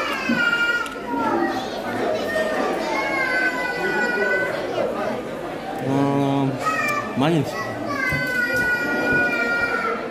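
A young child's high voice making long, drawn-out sing-song sounds, with a lower adult voice briefly about six seconds in.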